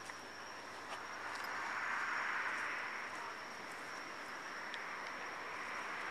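A vehicle passing on the road, its tyre noise swelling to a peak about two seconds in and slowly fading away.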